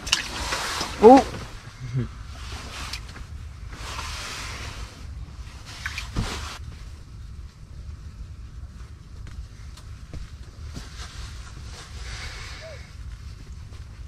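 An excited shout of 'Oh!', then several soft bursts of hissing noise over a low steady rumble.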